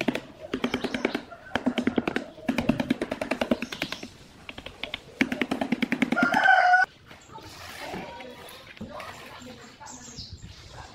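Rapid runs of knocking and scraping as a stick-like tool works against a cement-filled plastic jug mold, in bursts about a second long with short pauses. Near the end of the busy part a short chicken-like call sounds, then everything drops to faint background.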